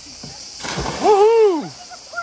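A splash into the sea about half a second in, followed by one long shout that rises and then falls in pitch.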